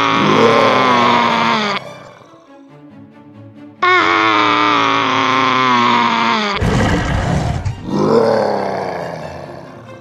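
Dinosaur roar sound effects: three long, loud roars with a wavering pitch, the last starting with a rough burst and fading away, over background music.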